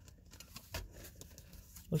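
Faint handling sounds of a plastic Blu-ray case and its paper booklet as the insert is pulled out: soft clicks and rustles, the loudest about three-quarters of a second in.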